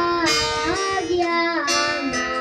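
A children's choir singing a song, the notes held and sliding smoothly from one pitch to the next.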